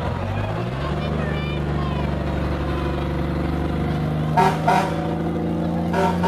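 Engines of an antique fire engine and an old Ford pickup running as they roll slowly past, the engine pitch rising early on, then two short toots of a vehicle horn a little over four seconds in.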